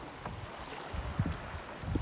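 Wind buffeting the microphone and choppy water slapping against a kayak hull: an uneven low rumble with a few soft thumps.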